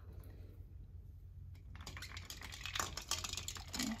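Ice cubes clinking and rattling in a pot of ice water, with some splashing, as kitchen tongs reach in to lift out blanched asparagus. The rattling starts about two seconds in, after a quiet spell.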